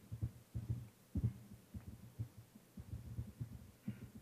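Typing on a laptop keyboard, the keystrokes picked up as irregular dull low thumps through the lectern microphone, several a second.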